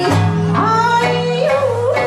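A live band performing a song: a woman's voice sings the melody in held notes that bend in pitch, over acoustic guitar, small plucked string instruments and steady low bass notes.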